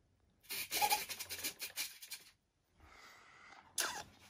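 A man's long, breathy exhale of exasperation, then a sharp intake of breath near the end.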